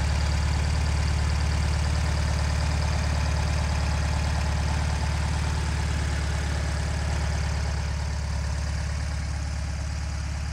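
1971 Volkswagen Super Beetle's air-cooled flat-four engine idling steadily, heard close up in the open engine compartment.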